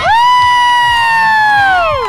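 Handheld air horn sounding one long blast to start a race, a steady blaring tone that sags in pitch as it cuts off near the end. Crowd cheering underneath.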